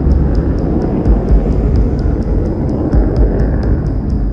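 Jet engines of a flying-wing bomber and its escort jet passing overhead: a loud, deep, steady rumble.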